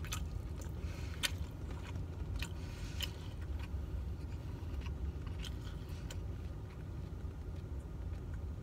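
Close-up chewing of a mouthful of rice and beef, with scattered small clicks from eating, over a steady low car-cabin hum.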